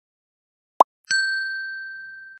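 Subscribe-button animation sound effect: a short click about a second in, followed at once by a bright notification-bell ding that rings on and fades.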